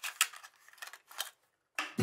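A Hot Wheels blister pack being pulled open by hand: a run of sharp crackles and clicks as the thin plastic blister and card backing give way. The sounds stop about a second and a half in.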